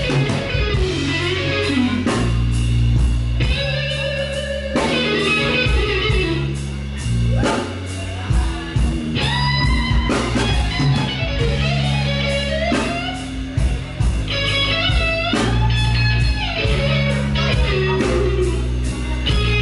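Blues-rock band playing live: electric guitar over a steady bass guitar line, with drum hits throughout.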